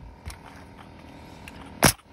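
A coil roofing nailer fires once near the end, a single sharp crack as it drives a nail through an asphalt ridge cap shingle.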